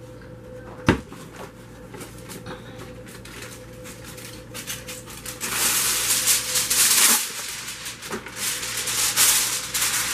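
Aluminum foil rustling and crinkling as it is handled and pressed over a glass baking dish, loud from about halfway in, after a single knock about a second in.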